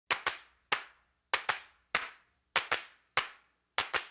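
Dry, sharp percussive claps beating a steady rhythm as a song's intro, about one every 0.6 seconds with every other beat doubled, each hit followed by a short reverberant tail.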